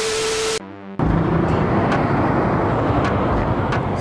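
A TV-static glitch effect, a burst of hiss with a steady beep, then a brief buzz; from about a second in, the Yamaha R15 V3's single-cylinder engine runs steadily under way with wind rush.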